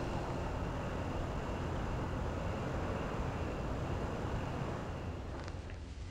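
Steady, low city ambience of distant traffic, fading slightly toward the end, with a few faint clicks near the end.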